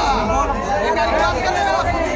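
A crowd of men talking over one another, several voices overlapping at once.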